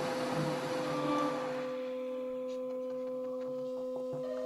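Improvised electronic music: two steady, pure held tones an octave apart, with a hiss that fades away over the first two seconds.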